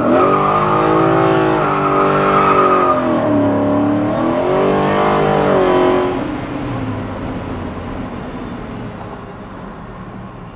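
Coyote 5.0 V8 revving hard under full-throttle acceleration from a standing start, with the rear tyres spinning. The engine note dips about three seconds in, climbs again, then falls away after about six seconds as the throttle comes off.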